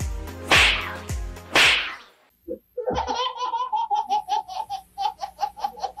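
Two loud whip-like swish sound effects over background music in the first two seconds. Then, after a brief gap, a baby laughing in a quick string of short bursts, about five a second.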